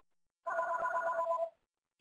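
A steady electronic tone made of a few fixed pitches, held for about a second, with the audio dropping to dead silence before and after it.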